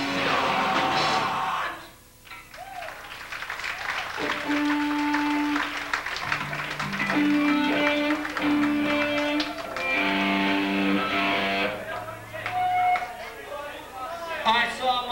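A live hardcore band playing loudly until the song breaks off about two seconds in. After a short lull, an electric guitar plays a string of held single notes, shifting from one pitch to another, between songs.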